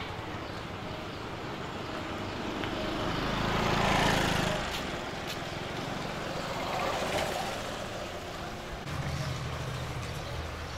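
Street traffic noise: a passing vehicle swells to its loudest about four seconds in and fades, with a smaller swell near seven seconds over a steady low hum.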